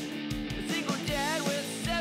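A song playing: a sung vocal line over guitar and a steady drum beat.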